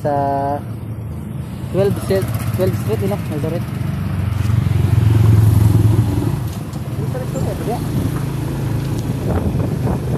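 Motorcycle engine running at low road speed in traffic, heard from the rider's seat. Its steady low hum grows louder about halfway through, then settles back.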